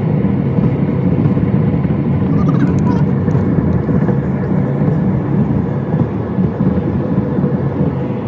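A car in motion: steady engine and road noise from inside the moving car.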